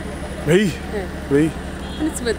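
Two short bursts of a man's speech over a steady low hum of street traffic, like an idling vehicle nearby.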